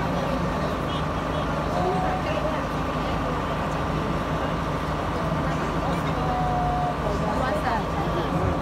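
Crowd of people talking at once, over a steady mechanical hum.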